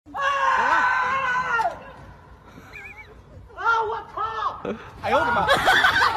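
A person's high-pitched, excited voice shrieking and calling out in three bursts: a long held cry at the start, short rising-and-falling calls near the middle and a denser burst near the end.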